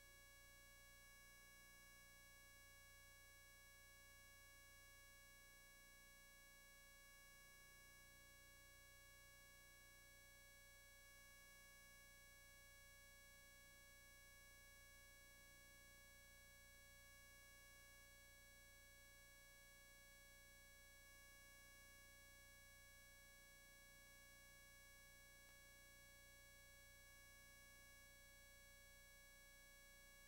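Near silence: only a faint, steady electrical hum of several fixed tones, with no programme sound.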